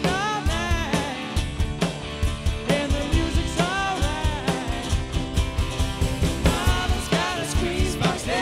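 A rock band playing an upbeat song: drum kit, electric guitar and a keyboard melody.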